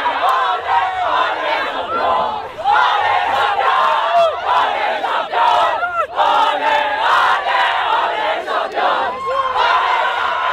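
A group of young women footballers shouting and cheering together in a loud victory celebration, many voices at once, with a brief lull about two and a half seconds in.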